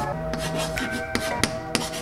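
Chalk scratching on a blackboard in a series of short strokes as a word is written, over background music with held notes.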